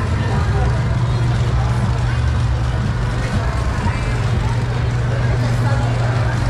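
Busy city street ambience: a steady low hum of idling and passing vehicle engines, with the voices of passers-by.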